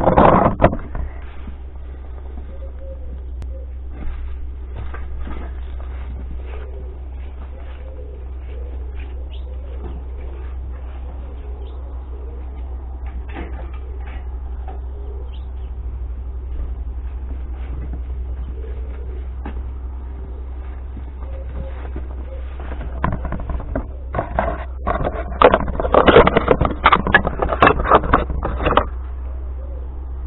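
Outdoor yard ambience with a steady low rumble, a loud clatter of knocks at the start and a longer run of knocks and rustling near the end, as scrap is handled close to the microphone.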